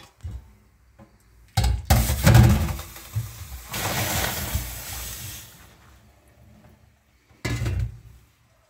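Boiled split dhal and its cooking water poured from a steel pot through a wire-mesh strainer into a stainless steel bowl at a steel sink. Metal clunks and knocks come about two seconds in, then a steady splashing pour for a couple of seconds, and another clunk near the end.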